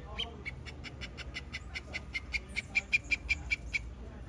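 An animal giving a rapid series of short, high-pitched calls, about five or six a second, growing louder toward the end.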